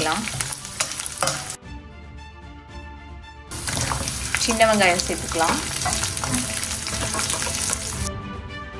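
Hot oil sizzling in a stainless steel frying pan with whole spices, garlic and dried red chillies, with a spatula stirring and clicking against the pan. About one and a half seconds in, the sizzle gives way to a short stretch of steady tones. From about three and a half seconds the sizzle returns louder, with small shallots now frying in the oil.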